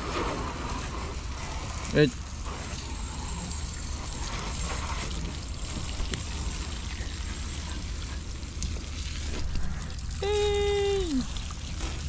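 Water from a garden hose spraying and splashing onto a boat, a steady hiss of running water.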